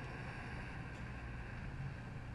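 A faint, slow, deep in-breath, a soft steady hiss, over a low steady hum.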